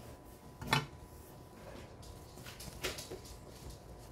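Faint handling noise as a fabric lampshade is moved about by hand, with two light knocks, the sharper one about a second in and another about three seconds in.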